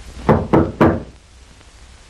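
Three quick knocks on a wooden door, about a quarter-second apart.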